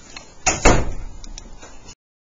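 Two sharp knocks about a fifth of a second apart, the second the louder, after which the sound cuts out to dead silence.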